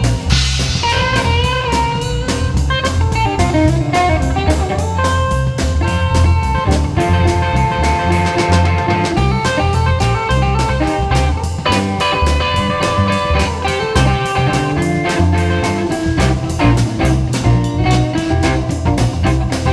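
Live blues band playing an instrumental passage: a guitar lead with bending notes over bass guitar and drum kit keeping a steady beat.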